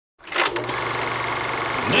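A fast, even rattle that starts abruptly after a moment of silence and runs steadily on.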